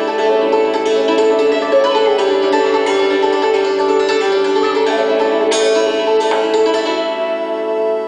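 Homemade 15/14-course diatonic hammer dulcimer with a cedar top, struck with hammers in a quick folk tune, its notes ringing over one another, with a penny whistle playing along. A strong struck chord comes a little after halfway, and the strikes thin out near the end so the strings ring on.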